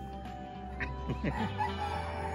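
A rooster calling briefly, with short falling squawks about a second in, over steady background music.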